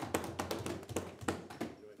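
Desk thumping: many hands pounding on wooden parliamentary desks in an irregular patter of knocks, a show of approval for the speaker's point, dying away near the end.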